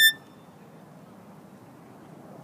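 A violin's high held note cuts off sharply just after the start, leaving a pause with only faint background noise.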